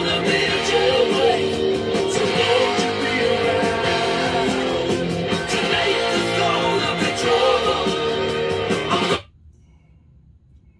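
A song with guitar and singing played over Bluetooth through the Olight Olantern Music lantern's built-in speaker, cutting off suddenly about nine seconds in.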